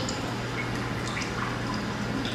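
Water dripping into a Japanese giant salamander tank: short, irregular drips, several a second, over a steady low hum.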